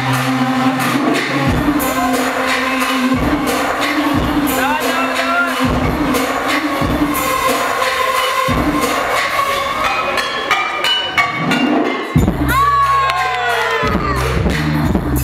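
DJ's hip-hop track played loud over a sound system, with a heavy bass line and beat, and a crowd cheering over it. About twelve seconds in the beat breaks off briefly and returns with sliding, falling tones.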